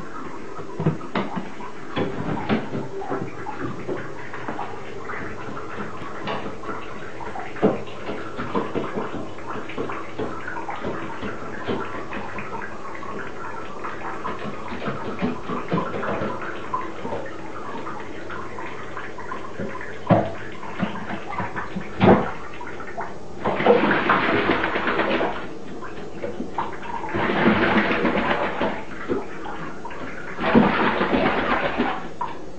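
A crow bathing in shallow water in a bathtub, beating its wings in bursts of splashing of about two seconds each, three times in the last third. Before that, scattered light taps and knocks as it moves about.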